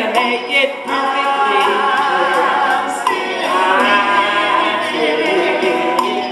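Two women singing a sing-along song a cappella into microphones, with a gourd shaker rattling along.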